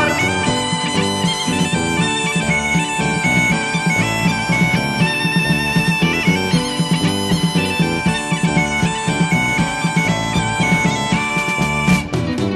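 Background music: a bagpipe (gaita) melody over a steady held drone, with a rhythmic beat underneath.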